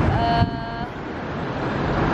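Steady road traffic noise with wind buffeting the microphone. A short, high held note sounds near the start and stops after under a second.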